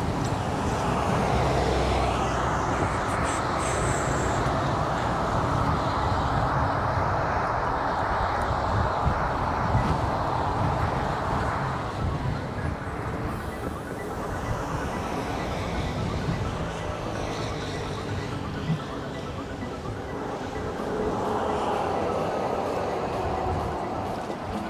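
Wind rushing over the microphone with tyre and road noise from a KingSong 18XL electric unicycle rolling steadily along a concrete sidewalk.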